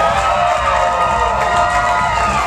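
Disco music playing loudly with a long held note that fades out near the end, over an audience cheering.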